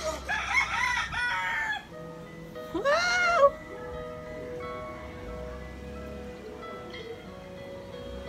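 Rooster crowing. The loudest call, a long rising-then-falling crow, comes about three seconds in, with soft music from a laptop playing underneath.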